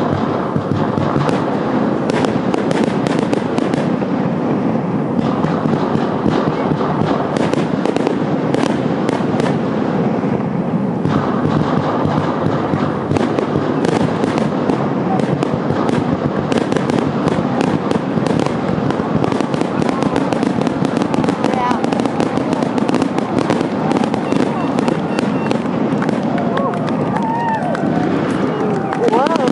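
Aerial fireworks shells bursting and crackling in quick, continuous succession, one report running into the next with no break.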